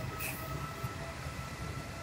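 Short hisses of an aerosol spray can being sprayed onto a car's body panel, two quick bursts in the first second, over a steady low drone with a faint whine.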